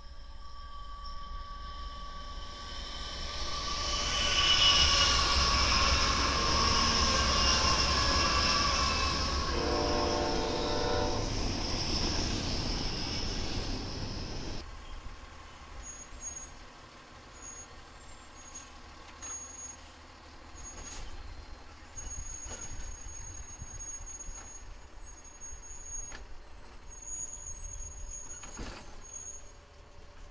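BNSF diesel freight locomotives and a double-stack train passing close on a curve, the engines running with a loud rumble and high steady wheel squeal that builds about four seconds in. About halfway through the sound cuts off suddenly to a much quieter Sperry rail-inspection hi-rail truck rolling on the rails, with light clicks and intermittent high tones.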